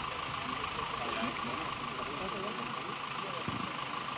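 Outdoor background sound through a live field microphone: a steady hum and hiss, with faint voices of people talking in the distance.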